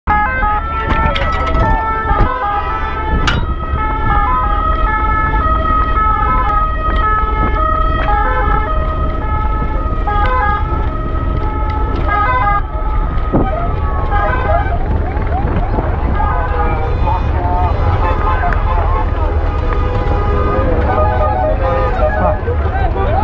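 Two-tone emergency sirens sounding in steadily alternating notes over a constant rumble of wind on the microphone. From about the middle on, the alternating notes give way to overlapping voices and gliding tones.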